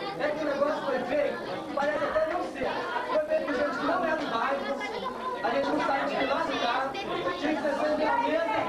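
Chatter of a group of people talking at once, many voices overlapping with no single speaker standing out.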